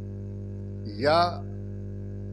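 Steady electrical mains hum, a low buzz with a ladder of overtones, running under the interview recording. A man says one short word about a second in.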